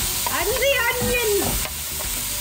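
Chopped green bell pepper and onion sizzling in hot oil in a stainless steel pan as a knife scrapes them in off a wooden cutting board. A short pitched vocal sound rises over the sizzle in the middle.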